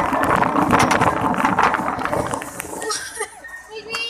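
Wire shopping cart rattling and clattering as it is pushed fast over a hard store floor, its wheels and basket giving a dense run of clicks that eases off about three seconds in. Faint voices follow near the end.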